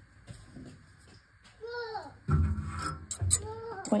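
Light metallic clicks of a combination wrench on a valve rocker-arm lock nut of a Honda GX620 engine, the engine not running, as the nut is tightened against a feeler gauge. A short falling voice-like sound comes about halfway through, and there is a brief low rumble in the second half.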